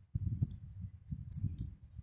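A few light clicks, one about half a second in and another past the middle, over a low rumble: a computer click advancing a presentation slide.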